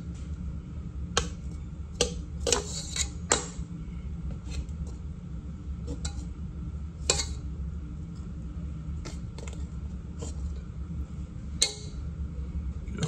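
A metal meat fork knocking and clinking against a metal pan as ribs are turned in sauce: about a dozen irregular clinks spread through, over a steady low hum.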